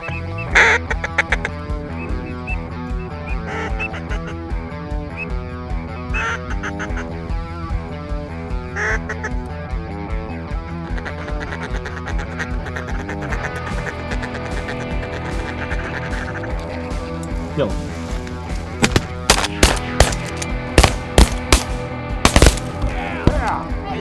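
Duck call blown in quacking notes over background music with a steady rhythm. Near the end comes a quick run of sharp, very loud bangs.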